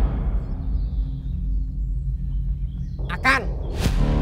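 Low, sustained background music drone, with a short wavering vocal call about three seconds in, followed by a brief click.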